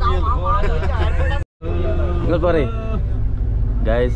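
Men talking inside a bus cabin, over the steady low rumble of the bus. The sound cuts out completely for a moment about one and a half seconds in.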